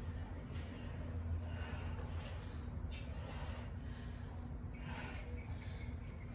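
A woman breathing hard, with breathy exhales near the end, during side lunges. Short high chirps come about every two seconds over a steady low hum.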